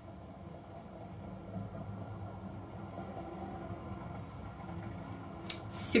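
Quiet room tone with a steady low hum, and a short hiss near the end.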